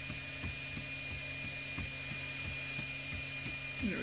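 3D printer running: a steady motor and fan hum with a thin high whine and faint ticks about three times a second, the stepper motors making short jerky moves instead of smooth infill, a fault the owner traces to G-code from Slic3r.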